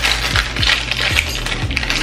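Small silver metal rings clinking and jingling against each other as they are tipped out of a plastic packet into a hand, in a quick run of light clicks. A deep bass beat of background music plays underneath.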